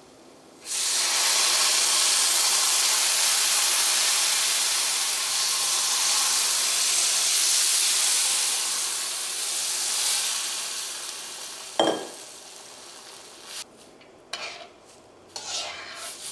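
Loud sizzling hiss as water is poured onto semolina roasted in hot ghee in a stainless steel pan. It starts about a second in and dies away after about ten seconds. Then comes a sharp knock, and a metal spatula clinks against the pan a few times as the mixture is stirred.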